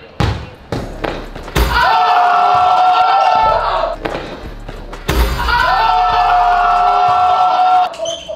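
A basketball bounced, then a dunk banging the rim of a small indoor hoop, followed by men's loud, long, held shouts of excitement. The dunk and the shouts are heard a second time about halfway through, as a replay.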